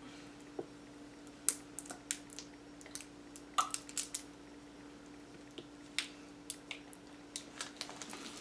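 Faint, scattered mouth clicks and lip smacks of someone tasting liquid candy squeezed from a small plastic bottle. A steady low hum lies underneath.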